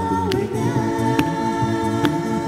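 Mixed a cappella group singing a sustained multi-voice chord through handheld microphones. Sharp vocal-percussion hits fall on the beat about once a second.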